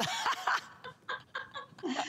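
Two women laughing together, in short broken bursts.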